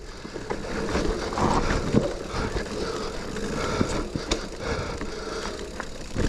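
Mountain bike riding fast down a dirt singletrack: a steady rumble of tyres on the trail and the rattle of the bike, with several sharp knocks as it hits bumps, roots and stones.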